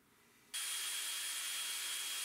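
Dewalt 20V cordless hammer drill running at a steady speed, drilling a pilot hole into the wall. It starts suddenly about half a second in, a steady hiss with a constant high whine.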